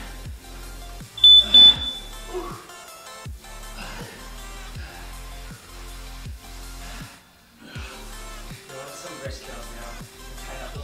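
Two short, loud, high electronic beeps in quick succession about a second in, from a gym interval timer marking the end of a work set. Background music with a steady beat runs throughout.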